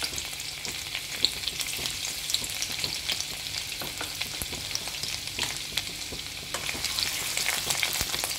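Finely chopped pieces sizzling in hot oil in a non-stick wok, a steady hiss dotted with many small pops and crackles.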